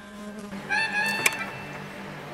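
A steady low buzzing hum, with a short held high note of background music about a second in that ends in a click.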